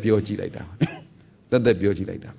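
A man's voice speaking in short phrases with pauses, and a brief throat clearing just before the one-second mark.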